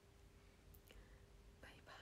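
Near silence: room tone with a faint steady hum, two soft clicks a little under a second in, and a faint whisper-like breath near the end.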